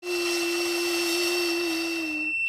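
A child blowing hard into a Smart Start ignition interlock breathalyzer while humming one steady note, as the device requires, with the rush of breath through the mouthpiece. A thin, steady high tone sounds over it.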